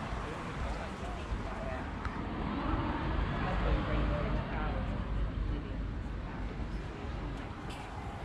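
Outdoor city ambience: indistinct voices of people close by, over a steady low rumble.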